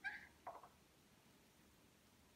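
Two faint, brief plastic squeaks as a dishwasher's circulation pump housing is twisted apart at its twist-lock joint.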